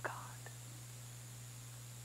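A man's spoken word ending right at the start, then a pause filled only by a steady low hum and faint hiss in the recording.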